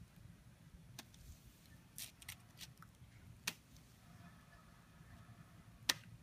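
A few faint, sharp taps and clicks spaced irregularly, the loudest a single sharp click near the end, over a low steady rumble.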